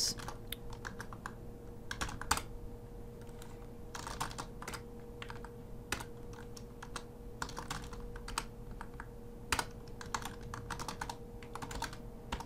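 Typing on a computer keyboard: irregular runs of quick keystrokes broken by short pauses.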